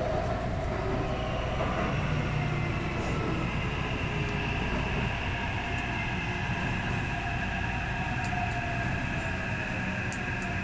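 Taipei Metro C371 train heard from inside the passenger car while running: a steady rumble of wheels on rail with a high motor whine that rises slightly about a second in and then holds.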